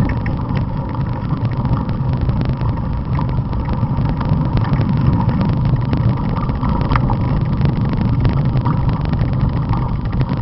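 Steady low rumble of a mountain bike rolling over a dirt forest trail, with a constant patter of small rattles and knocks from the bike as it rides over the rough ground.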